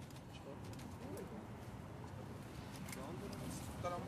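Faint voices of people talking some way off over steady outdoor background noise, with a nearer voice starting just before the end.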